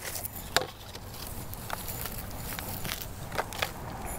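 Scattered light clicks and crackles of a plastic nursery pot being handled and squeezed to free a plant's root ball, with rustling of hands in loose potting soil.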